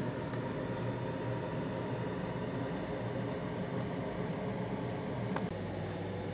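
Steady hiss with a low hum: room tone with no distinct sound event, and one faint click just before the end.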